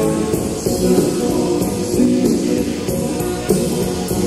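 Live rock band playing on a late-1970s concert bootleg recording: electric guitars and bass over a steady drum beat.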